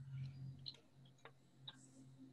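Near silence: a low steady hum with a few faint, irregularly spaced clicks.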